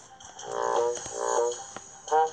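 Cartoon sound effect from a children's Bible story app: two short buzzy, droning tones, each dropping in pitch at its end.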